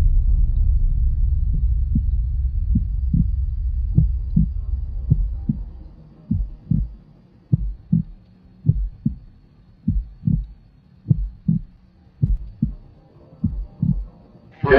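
Suspense sound effect: a low droning rumble that fades out about halfway, then a slow heartbeat, double thuds coming a little more than once a second.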